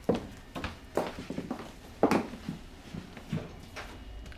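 Footsteps on a hard floor: about six irregular, sharp knocking steps, the loudest about two seconds in.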